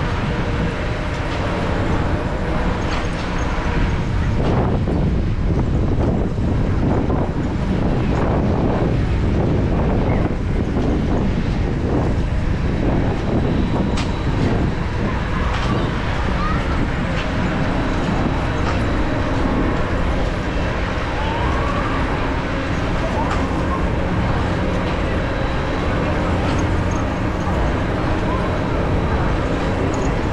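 Outdoor carnival ambience: wind buffeting the microphone with a heavy low rumble, background voices of people nearby, and a faint steady mechanical hum under it.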